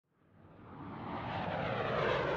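Jet aircraft engine noise fading in and growing steadily louder, a deep rumble under a rushing roar.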